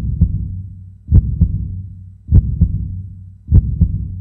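Heartbeat sound effect: four double thumps, lub-dub, about a second and a quarter apart, each over a low hum that dies away before the next.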